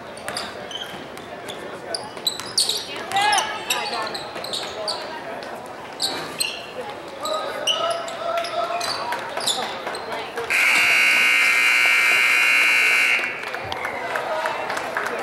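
Basketball bouncing on a hardwood gym floor amid sneaker squeaks and players' shouts, then the scoreboard buzzer sounds loudly and steadily for about two and a half seconds near the end.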